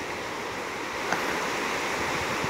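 Ocean surf washing onto the beach, a steady rushing noise, with wind buffeting the microphone.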